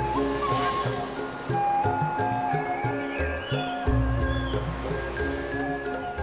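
Background music of held notes that step from pitch to pitch over deep bass notes coming and going.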